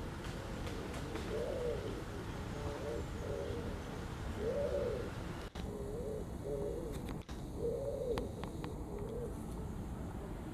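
A pigeon cooing in low, repeated phrases: a long rising-and-falling coo followed by a few shorter coos, the pattern coming round about every three seconds.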